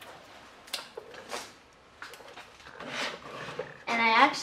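Faint handling sounds of a charging cable and a small wooden craft house: two short rustles or soft knocks in the first second and a half, then a longer rustle about three seconds in.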